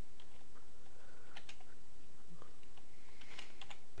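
Computer keyboard keystrokes: a handful of scattered, unhurried key presses while a short command is typed, over a steady background hiss.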